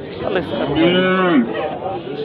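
One of the penned cattle moos once: a single call lasting just under a second, about halfway through, among men's voices.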